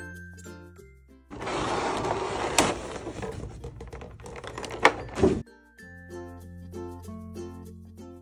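Clear plastic packaging crinkling and rustling as it is handled, with a few sharp plastic snaps, for about four seconds in the middle; light background music plays before and after.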